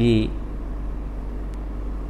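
A man's voice says one short word at the start, then a pause filled only by a steady low hum.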